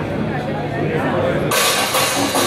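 Audience chatter over a low amplifier hum, then a cymbal wash comes in suddenly about one and a half seconds in as the band starts the next song.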